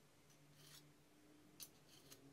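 Near silence with faint metal handling noises: a light scrape and then a short click as a thin metal rod and a steel pipe are handled by gloved hands.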